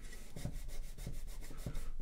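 Fingers pressing and rubbing along a fold in a sheet of origami paper on a wooden table, creasing it: a soft, uneven scratchy rubbing of paper.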